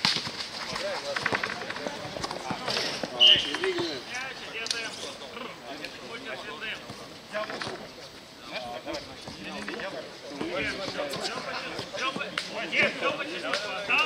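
Players' voices calling out and talking during a streetball game, with a basketball bouncing on the rubberised court now and then.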